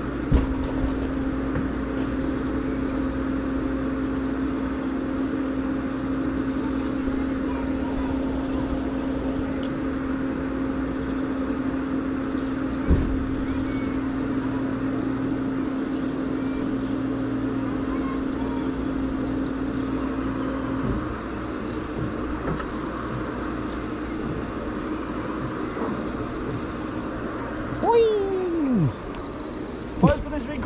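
Booster thrill ride's machinery humming steadily on one low tone over a constant rushing noise while the ride stands at the platform. The hum stops about two-thirds of the way in, as the ride starts to lift. There is a sharp click just after the start and another around the middle, and a short falling sweep near the end.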